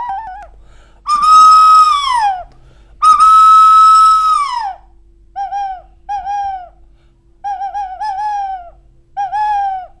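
Whistle-like sound mimicry: two long, loud high notes, each held about a second and a half and then sliding down, followed by a run of about six short, bent chirping notes.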